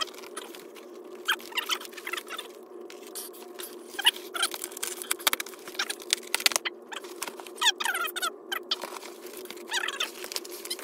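Packing tape being cut and ripped off a large cardboard box, with cardboard scraping: an irregular string of short crackling rips and scratches, denser in clusters around the middle and near the end.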